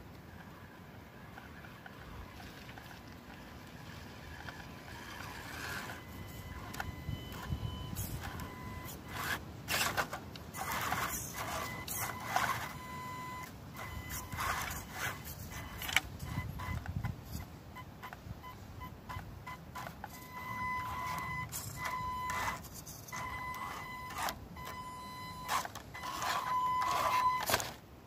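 Small Panda Tetra K1 RC crawler's electric motor and gears whining in stop-and-start bursts, beginning about six seconds in, mixed with crackling leaves and scrapes as the truck's tyres claw over a tree root.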